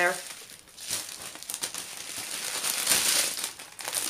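Small plastic bags of diamond painting drills crinkling and rustling as hands gather them up, loudest about three seconds in.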